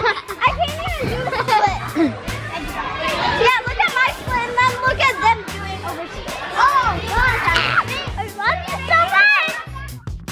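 Young girls talking and calling out in high voices over background music with a steady low beat.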